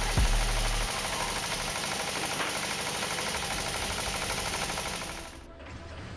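Small grain mill running steadily with a fast, dense mechanical rattle. It fades out about five seconds in.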